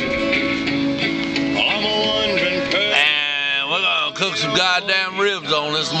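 Recorded music playing: a song with guitar and a singing voice.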